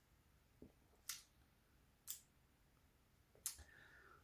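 Near silence broken by three short, faint breaths about a second apart: a person breathing out while tasting a mouthful of beer.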